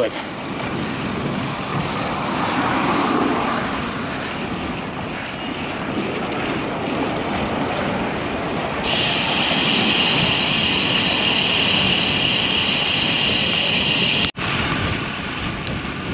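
Wind rushing over an action camera's microphone, with road-bike tyre noise on a concrete street. From about nine seconds in a steady high buzz joins, the freehub of the coasting road bike, until the sound cuts out for an instant near the end.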